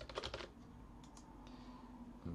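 Computer keyboard typing: a quick run of keystrokes in the first half second, then a few scattered single clicks.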